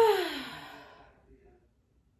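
A woman sighs once: a breathy exhale that falls in pitch and dies away within about the first second.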